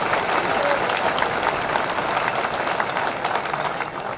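A large crowd applauding: dense, steady clapping that eases off near the end.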